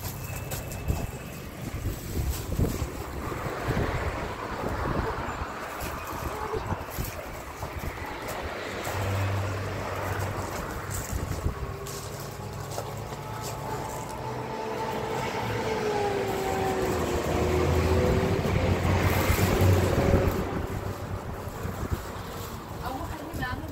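A motor vehicle's engine running, its pitch gliding and getting louder toward the end, with wind on the microphone.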